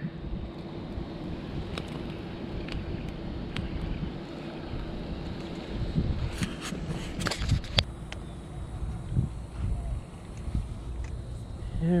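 Wind on the microphone and hand-handling noise as a live bluegill is put on the hook, then a spinning rod casting a bobber rig, with a cluster of sharp clicks from the reel and line about six to eight seconds in.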